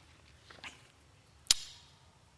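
A quiet pause in a room with one sharp knock about one and a half seconds in, fading quickly.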